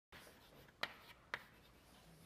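Chalk writing on a blackboard: two sharp taps of the chalk against the board, about half a second apart, over faint room hiss.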